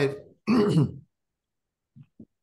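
A man clears his throat once, about half a second long, right after starting to speak.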